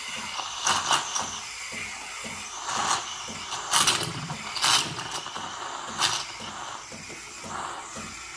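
Steam wand of a De'Longhi ECAM 23.120.B espresso machine frothing milk in a glass mug: a steady hiss with brief louder bursts every second or so.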